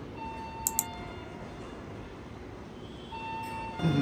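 Convenience store entrance ambience: a steady background hum, a couple of light clicks, and two held electronic tones, one early and one near the end.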